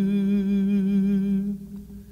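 Music: a singer's long held note with vibrato over a sustained accompaniment chord, fading away about a second and a half in.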